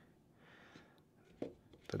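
Quiet room tone with a single short, soft click about one and a half seconds in, then a man starts to speak.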